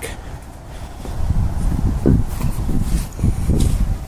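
Strong gusting wind buffeting the microphone: an uneven low rumble that swells about a second in and keeps surging and dropping.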